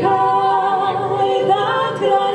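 Two women's voices singing a long held note in harmony with vibrato, the pitch stepping up near the end, over an acoustic guitar.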